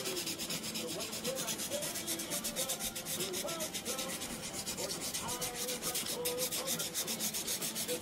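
Felt-tip marker scratching across paper in quick, short back-and-forth strokes, several a second, as grass is drawn.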